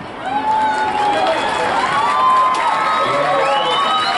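Crowd in the stands cheering and shouting, with drawn-out whoops and calls overlapping.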